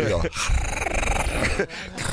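A man making a rough, raspy growling noise with his voice, lasting about a second and a half.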